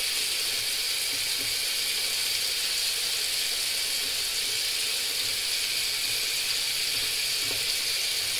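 Steady hiss of water running from a bathroom sink tap.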